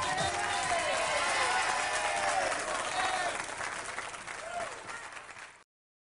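Studio audience applauding and cheering with shouts and whoops as the song ends, fading down and cutting off near the end.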